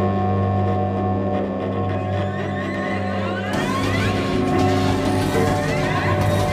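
Cello with live electronics: a sustained low drone under layered steady tones. About three and a half seconds in, a brighter, hissing layer enters, carrying repeated rising glides.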